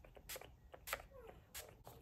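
Setting spray misted from a pump bottle onto the face: a series of short, quick spritzes, each a brief hiss, roughly one every half second.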